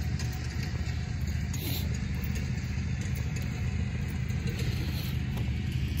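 Steady low engine hum with no change in pitch or level.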